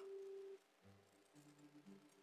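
Near silence, with faint held low tones: one fades out about half a second in, and lower ones come in about a second in.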